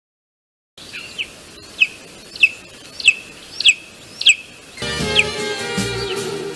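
A bird giving a string of short chirps, each falling in pitch, repeated about every half second for some four seconds. Music comes in near the end.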